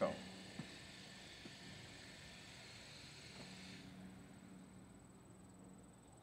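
Honeybees buzzing faintly and steadily around an opened hive, with a few light clicks as a comb frame is handled.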